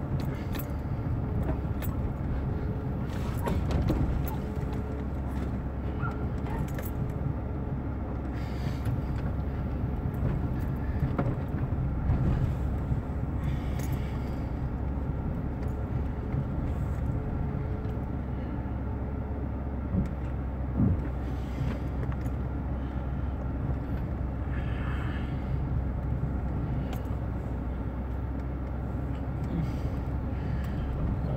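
A car driving on a rough, uneven street, heard from inside the cabin: a steady low engine and road rumble with scattered small knocks and rattles.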